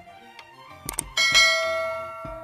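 Subscribe-button animation sound effects: a click a little under a second in, then a bright notification-bell chime that rings out and slowly fades, over background music.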